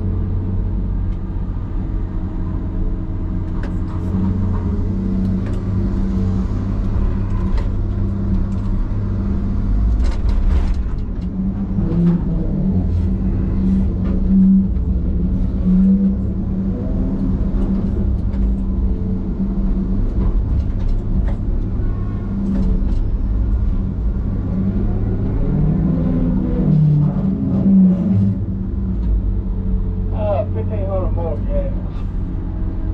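Diesel engine and hydraulics of a John Deere knuckleboom log loader heard from inside its cab: a loud, steady low drone that swells now and then as the boom and grapple work. Scattered short knocks and clatter sound through it.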